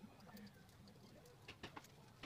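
Near silence, with a faint bird coo about half a second in and a few light clicks near the end.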